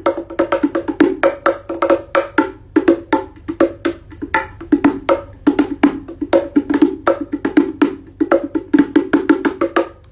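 Gappu wooden bongo, a pair of small wooden box drums, played with bare hands in a fast rhythmic pattern of crisp strikes, each with a short woody ring.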